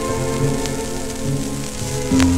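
Music played from a shellac 78 rpm record on a Goldring Lenco GL75 turntable, over steady surface hiss and crackle, with a sharp click about two-thirds of a second in.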